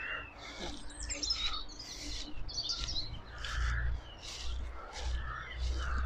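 Small birds chirping, a few short high calls about a second in and again around three seconds, over a low rumble.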